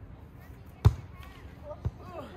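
A volleyball struck by players' hands and forearms in a rally: a sharp slap a little under a second in, the loudest sound, and a second hit about a second later. A player's voice calls out between and after the hits.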